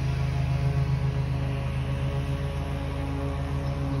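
A steady low drone with several held tones, unbroken throughout.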